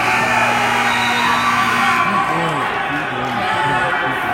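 Spectators shouting and whooping over a crowd hubbub in a gymnasium. One voice holds a long, steady low note for about two seconds, then shorter shouts follow.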